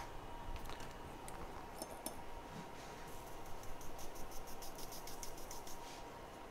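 Faint light ticking at the workbench, a few scattered clicks and then a run of quick ticks at about five a second in the second half, over quiet room tone with a faint steady hum.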